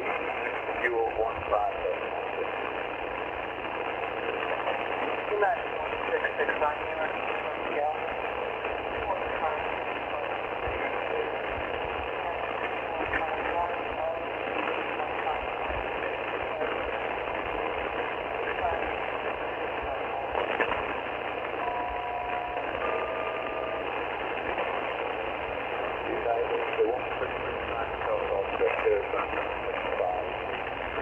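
Icom IC-R30 receiver tuned to an HF aeronautical channel in upper sideband (8918 kHz): steady static hiss with weak, broken radio voice traffic. About 22 seconds in, two pairs of steady tones of about a second each sound one after the other, typical of a SELCAL call to an aircraft.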